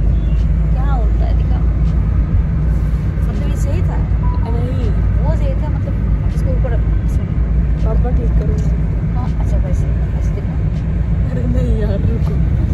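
Steady low rumble of a moving car heard from inside the cabin, with quiet voices talking over it.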